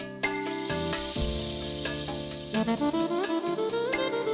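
Manele music played live on an electronic arranger keyboard. The first half carries a long hissing wash over held chords; about two and a half seconds in, a fast, ornamented lead melody with bending, sliding notes comes in.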